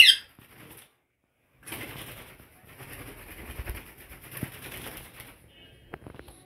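A pet green parakeet gives one short, loud, high-pitched squawk, followed after a brief gap by soft rustling and fluttering of wings and feathers.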